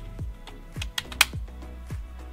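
Sharp plastic clicks from the laptop's bottom-cover release latch being slid and the cover shifting, a quick cluster of three about a second in with the last one loudest, over background music with a steady beat.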